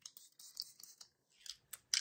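Fine-mist pump sprayer of a Coola SPF 30 makeup setting spray bottle spritzed at the face several times in quick succession: soft, short hissing puffs.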